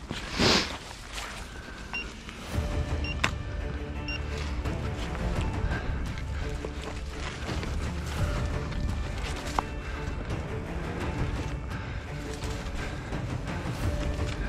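Someone pushing through dense undergrowth on foot: leaves and twigs rustling and scraping, with footsteps in leaf litter. There is a loud brush of branches about half a second in, and a few short, high beeps between two and four seconds in.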